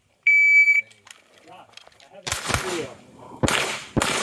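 Competition shot timer giving its start beep, one steady high-pitched tone about half a second long. About two seconds later a GSG Firefly .22LR long-barrel pistol with a muzzle brake fires two shots about a second apart, with a third right at the end.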